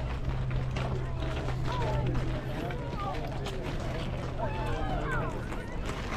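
Several indistinct voices of softball players and spectators calling out across an open field, overlapping, with no clear words. A steady low hum runs underneath and stops about five seconds in.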